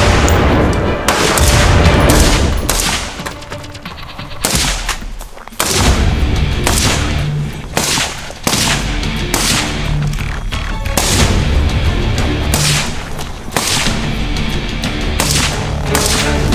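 Rifle shots, a dozen or so at uneven intervals, each with a short ringing tail, over music with a heavy bass beat.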